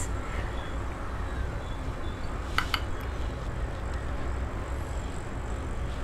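Steady low background rumble, with two light clicks in quick succession about two and a half seconds in.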